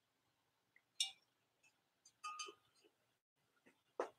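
Pink ruffled hobnail glass basket clinking lightly as it is handled and turned: a short ringing tap about a second in, a couple of light clinks a little past halfway, and another tap at the end, with near silence between.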